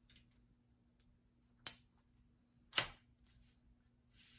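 Two sharp metallic clicks about a second apart as sections of a projector screen's metal frame poles are fitted together, each leaving a brief high ring, with light handling rustle around them.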